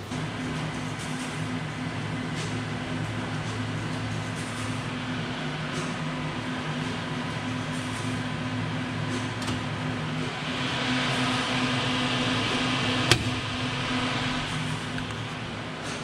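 CP Bourg 3002 perfect binder running with a steady low hum, powered back up for a test after a short in its wiring harness was repaired. A louder hissing whirr builds from about ten seconds in, with a single sharp click about three seconds later.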